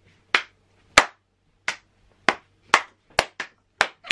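Hand claps: about eight single claps, spaced apart at first and coming faster toward the end.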